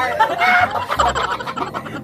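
A group of young people laughing hard together: shrill, cackling bursts of laughter from several voices at once.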